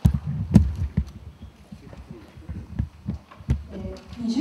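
Irregular low thumps and knocks, a cluster in the first second and scattered ones after, like handling bumps on a microphone.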